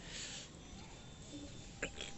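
A faint breath into a close microphone from the pausing narrator, followed near the end by a short mouth click.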